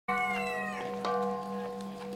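A struck metal bell ringing, hit twice about a second apart; several tones ring on and slowly fade.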